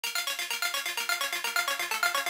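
Electronic music opening on a fast synthesizer arpeggio of short, bright, ringtone-like notes, about eight a second.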